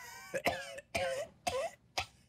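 A person coughing in a run of about four short coughs, as if after a hit of smoke.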